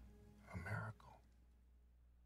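Near silence, with a brief faint whisper about half a second in.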